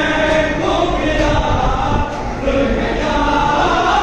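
A group of voices chanting together, with a short dip about halfway through.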